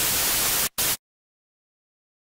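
Television static: an even hiss with a brief break, cutting off abruptly about a second in.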